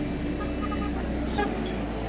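Street traffic: a steady mix of passing vehicle engines.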